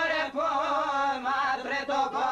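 A male voice singing an Albanian folk song in a drawn-out, ornamented line whose pitch wavers up and down, with a short break about a third of a second in.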